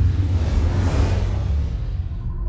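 Programme ident music with a heavy, deep bass and a whoosh sound effect that swells up and fades away about halfway through.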